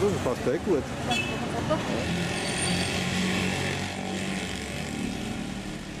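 Busy street noise: motor traffic, with an engine running close by through the middle, and people's voices in the first second.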